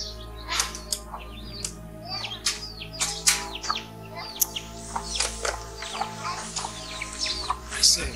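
Birds chirping, many short falling chirps scattered throughout, over a soft background music bed of sustained tones and a low drone.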